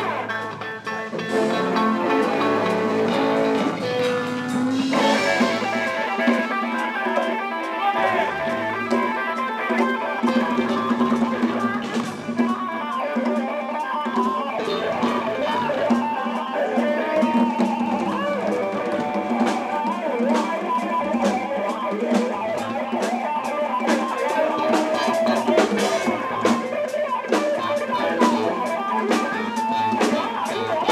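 Live band music led by an electric guitar, with hand-played congas adding quick strikes through the later part.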